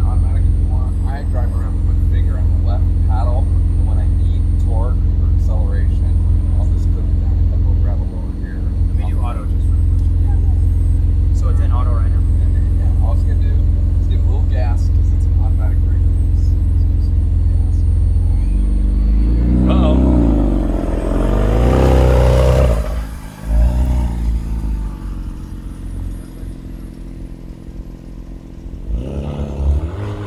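McLaren Artura's twin-turbo V6 idling steadily, then, about two-thirds of the way through, revving as the car pulls away, loudest a few seconds later, and fading as it drives off.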